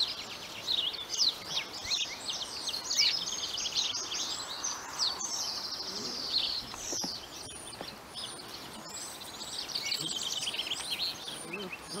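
Several songbirds chirping and singing continuously: many short, high-pitched whistled notes and trills overlapping.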